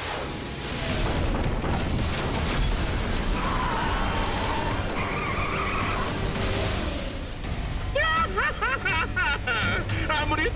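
Cartoon action sound effects of a tracked drilling vehicle speeding along, over background music. A voice comes in about eight seconds in.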